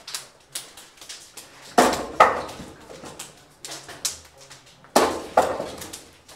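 Wing Chun wooden dummy struck by forearms and hands: a run of sharp wooden knocks, with two loud double knocks about two seconds in and again near the end.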